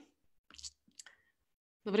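Near silence on a video-call line broken by a couple of faint short clicks, then a woman starts speaking near the end.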